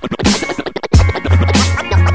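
Hip-hop beat with DJ turntable scratching. For about the first second the bass drops out under choppy scratches, then the kick drum and bass come back in.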